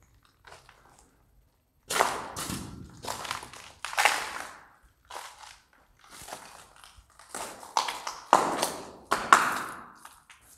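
Footsteps crunching over a debris-strewn floor: a faint tap or two, then from about two seconds in a steady run of sharp, gritty steps at walking pace, with a little room echo.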